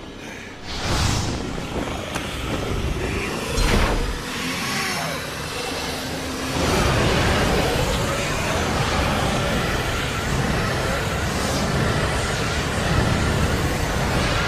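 Dense heavy rock instrumental without vocals, distorted guitars and drums. It swells twice in the first few seconds and thickens into a fuller, steadier wall of sound about halfway through.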